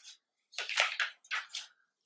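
A die being shaken and rolled for a rouse check: a quick run of small, light clatters lasting about a second, starting about half a second in.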